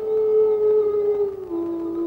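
Film background score: a single long held electronic note with overtones, sliding slowly down in pitch and stepping lower about one and a half seconds in.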